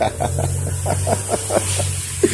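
A man laughing: a low, held chuckle broken into quick pulses of breath, several a second.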